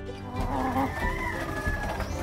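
A rooster crowing, one long drawn-out call, over background music.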